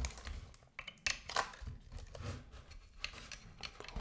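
Handling noise from a Samsung U28E590D monitor stand's plastic and metal parts being worked with a screwdriver: a few short hard clicks and knocks, the sharpest about a second in.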